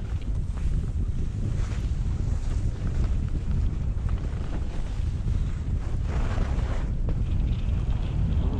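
Steady low rumble of wind buffeting the microphone of a skier's camera during a descent, with the hiss of skis sliding on packed snow, swelling into a louder scrape of a turn about six seconds in.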